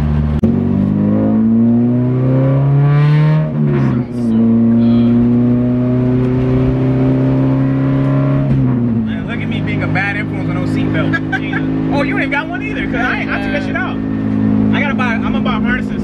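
K20/K24 all-motor four-cylinder in a K-swapped Acura Integra under hard acceleration, heard from inside its stripped cabin. The revs climb for about three seconds, dip briefly at a quick upshift, then climb again for about four seconds. It then lifts off and settles to a steady cruise.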